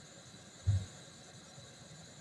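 Faint room tone with a steady high-pitched hiss from the recording, broken once by a brief spoken 'okay' just under a second in.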